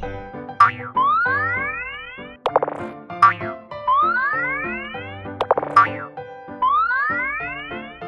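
Cartoon sound effects over children's background music: a sharp click followed by a springy rising boing-like glide, three times, about every three seconds, as truck parts snap into place.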